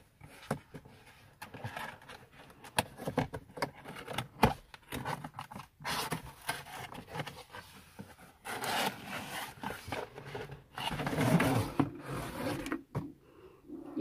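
Cardboard box being opened and handled: flaps and sides scraping and rubbing, with many small clicks, growing into longer, louder scraping and rustling in the second half as the armrest is slid out of the box.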